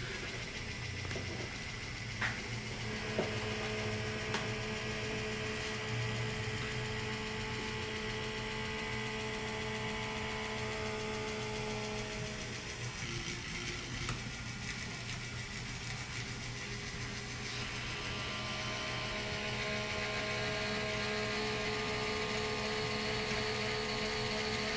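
Motorized HO-scale model railroad turntable running as its bridge rotates: a steady motor and gear hum with a faint whine. A few light clicks come in the first five seconds.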